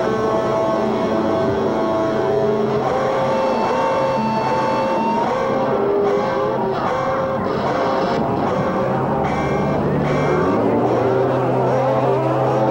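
Electric guitars droning in a noise passage: several long sustained tones, some sliding up or down in pitch, over a steady low hum, typical of amplifier feedback worked at the amps.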